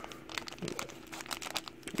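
Foil wrapper of a trading-card booster pack crinkling and tearing as it is pulled open by hand: a string of small, irregular crackles.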